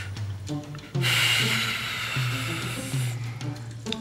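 Dramatic background score: a low line of stepping bass notes, joined about a second in by a bright, hissy wash that fades out near three seconds.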